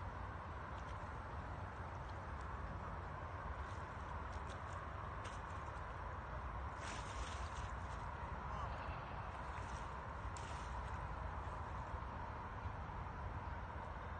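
A hooked wels catfish splashing at the water surface beside an inflatable boat as it is grabbed by hand: a few short splashes, the biggest about halfway through, over a steady background of outdoor noise.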